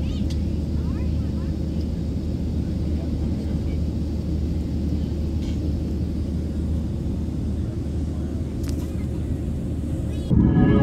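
Boeing 737 airliner cabin in flight: the steady low drone of the jet engines and airflow, unchanging in level.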